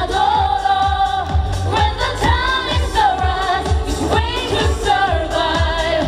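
Live pop performance: a female voice sings long held notes, each about a second, bending at the ends, over a band backing with a steady drum beat.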